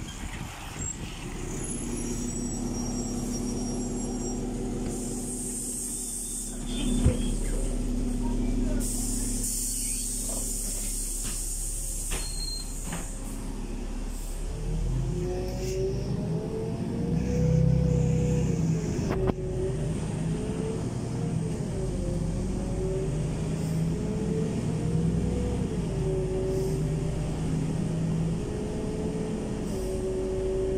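LiAZ 5292.65 city bus idling at a stop, with two long hisses of released compressed air and a sharp thump about seven seconds in. Halfway through it pulls away and drives on, its engine and drivetrain whine rising and falling with speed, heard from inside the passenger cabin.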